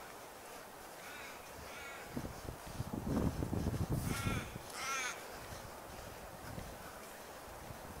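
Crows cawing: two faint caws about a second in, then two louder caws around four and five seconds, over a spell of low rumbling noise.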